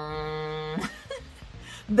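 The off-air tone of an old antenna TV: one steady, unwavering buzzing note that cuts off sharply under a second in.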